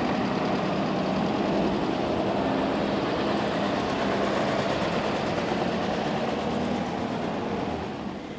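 Engines of several boxy military-style off-road trucks running as the convoy drives slowly along a dirt track, a steady engine note that eases off slightly near the end.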